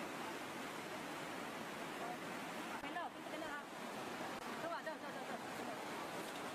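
Steady rushing of a fast, muddy floodwater river in spate, with a few brief voices heard over it around the middle.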